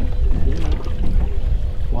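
A steady low rumble of wind and boat noise on the microphone, with a faint voice briefly in the first second.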